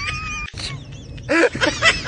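A person's high-pitched drawn-out squeal, wavering in pitch, cuts off about half a second in. From about a second and a half, shrill, rapid bursts of laughter follow.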